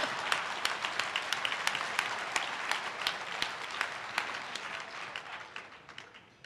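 Audience applauding, a dense patter of clapping that gradually dies away over the last couple of seconds.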